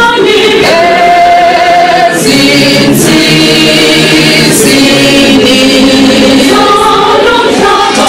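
Recorded music with a choir singing long held notes.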